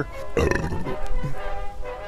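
A man drinking from a glass beer bottle, with a short breathy noise about half a second in, over steady background music.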